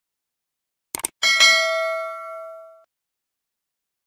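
Subscribe-button sound effect: two quick mouse clicks, then a notification-bell ding that rings out and fades over about a second and a half.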